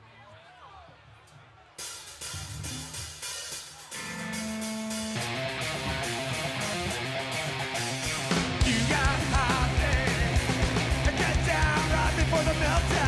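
Stoner rock band starting a song live: after a faint second or two, the drums come in, then bass and distorted electric guitar join, and the full band is playing by about five seconds in. A man's singing enters after about eight seconds.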